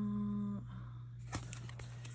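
A woman's brief closed-mouth "hmm" held on one steady pitch, ending about half a second in, followed by a faint click and light rustling of a paper sticker book being handled.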